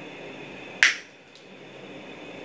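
Diagonal cutting pliers snipping through an insulated copper electrical wire: a single sharp snap a little under a second in.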